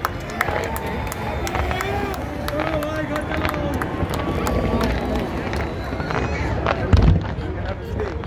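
Fireworks going off with sharp cracks and bangs over the chatter of a crowd, with a loud low boom about seven seconds in.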